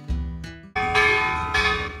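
A bell struck once about three quarters of a second in, its tone ringing on and slowly fading over a low note of background music.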